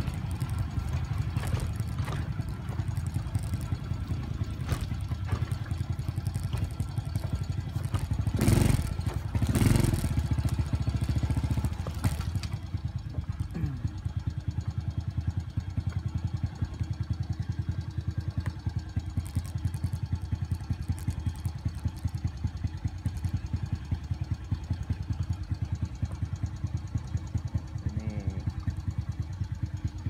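Motorcycle engine running steadily at low speed, with two brief louder bursts about eight and a half and ten seconds in.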